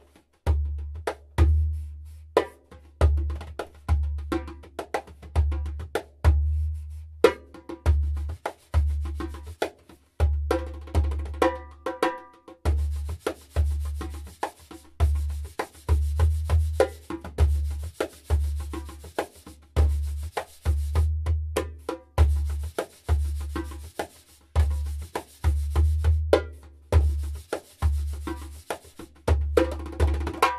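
A BeTogether 12-inch fiberglass djembe with a synthetic fleece-coated head, played by hand in an improvised rhythm. Deep bass strokes land about once a second, with quicker, sharper slaps and tones between them.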